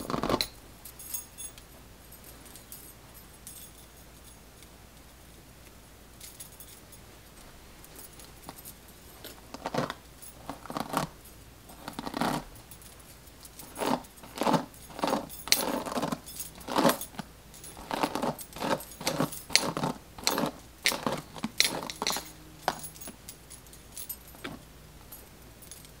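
Bracelets jingling on a wrist in short, irregular bursts as a hand works through a doll head's synthetic hair. A quiet stretch comes first, then the jingles come quick and often, about two a second, from about ten seconds in.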